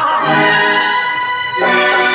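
Live stage band music: a melody of long, held notes on a loud melody instrument, moving to a new note about one and a half seconds in.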